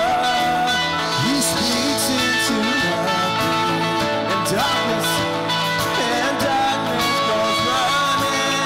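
Live worship band music: electric guitar playing over held keyboard chords, with drums and cymbals, continuing steadily.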